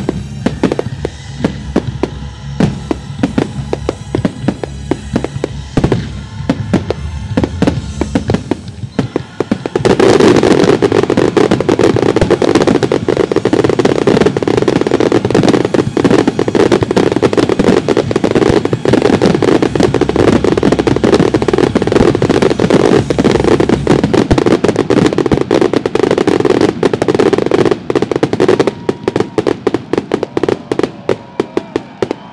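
Dominator fireworks display: separate shell bursts and bangs at first, then from about ten seconds in a dense, unbroken barrage of reports and crackle, thinning to separate bangs again near the end.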